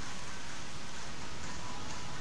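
Steady wind noise on the microphone, a rushing hiss with a low rumble. A faint steady tone comes in about a second and a half in.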